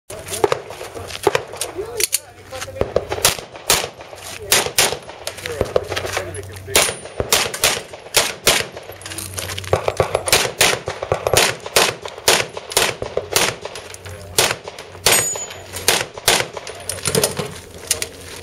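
A handgun fired again and again: dozens of sharp shots, mostly in quick pairs and short strings, separated by brief gaps.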